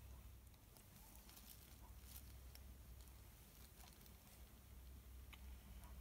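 Near silence: a faint low hum with a few soft, scattered ticks from gloved hands handling a canvas as it is tilted.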